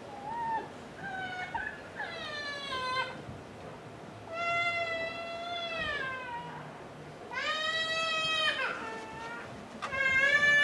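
A young child crying: three long wails, each falling in pitch, with a few shorter cries before them.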